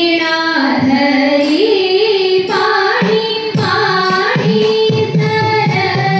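A high female voice singing a Thiruvathirakali song, holding long notes that glide from pitch to pitch in a Carnatic style.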